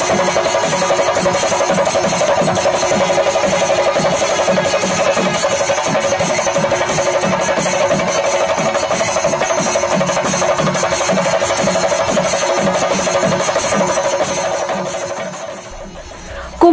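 Kerala chenda melam: a large group of chenda drums beaten with sticks in a fast, even rhythm, with ilathalam hand cymbals clashing and a steady tone from kombu horns held above them. It fades out near the end.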